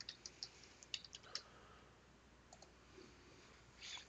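Faint computer keyboard typing: a quick run of light keystrokes in the first second and a half, then a few scattered clicks.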